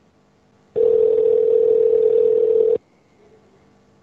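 Telephone line tone: one steady beep about two seconds long that starts and cuts off abruptly, heard over the phone line as the insulting call ends.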